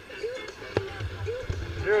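Short fragments of the rider's voice, a single sharp click a little before halfway, then low thumping and rumble for most of the second half, as from a camera jolting on a moving bicycle.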